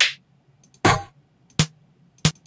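Electronic snare drum samples previewed one after another, three short, sharp hits that each die away quickly, with faint mouse clicks before them.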